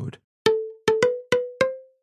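A short percussive transition sting: five quick, unevenly spaced struck notes in a cowbell-like timbre. Each rings briefly, and the pitch steps slightly upward from note to note.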